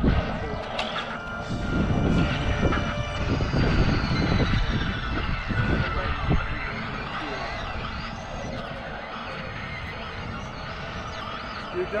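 Combat lightsaber sparring: blades clashing and knocking together over a low rumble, loudest and busiest in the first half and dying down as the exchange ends about halfway through.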